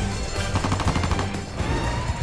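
A rapid burst of machine-gun fire lasting under a second, a quick even rattle of shots, over film-score music with a low bass.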